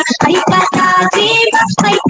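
A recorded Hindi song playing: singing over a rhythmic backing track.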